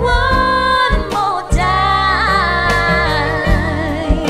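A woman singing two long, wavering held notes without clear words over a pop backing track with bass and drums.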